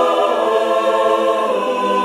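A choir singing a slow threefold "Amen" in long, held chords, moving to a new chord about a third of a second in.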